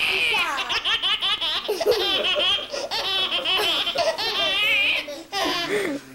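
A baby laughing hard in long runs of high-pitched laughter, with a short break about five seconds in.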